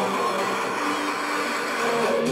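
Electronic dance music from a DJ set in a breakdown: the bass and kick drum are cut out, leaving a hissing noise wash and a few faint held synth notes.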